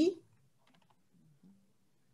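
A few faint computer keyboard key clicks as a short edit is typed.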